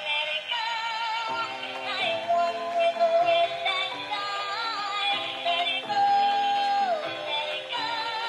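A battery-powered dancing doll plays its built-in song through its small speaker: a synthesized tune with a computer-generated singing voice. The sound is thin, with little bass.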